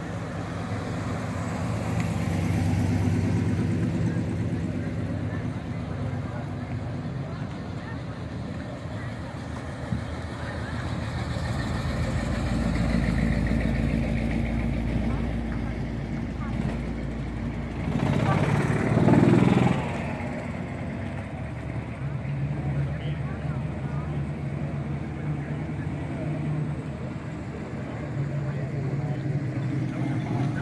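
Classic cars' engines running at low speed as the cars roll slowly past one after another, the engine note rising and falling as each one goes by. Voices are heard among them, loudest about two-thirds of the way through.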